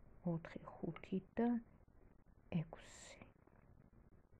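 Soft, half-whispered speech by a woman: a few short words, then a long hiss of an 's' sound about three seconds in.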